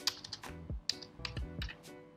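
Computer keyboard keys clicking irregularly as a word is typed, over background music with sustained notes and a low, falling thud every half second or so.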